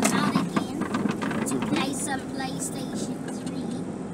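A child talking inside a moving car's cabin, over the car's steady running and road noise.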